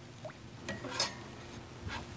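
A metal spatula scraping and tapping on the steel cooktop of a Blackstone flat-top griddle as stir-fry vegetables are turned: a few short strokes, the loudest about a second in, over a faint sizzle.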